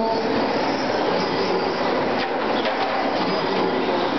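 Electric 2WD RC racing trucks running on a dirt track: a steady blend of high motor and gear whine with tyre noise on dirt.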